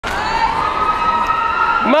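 A crowd cheering and shouting, with several high, long-held cheers over the noise; a shouted voice cuts in near the end.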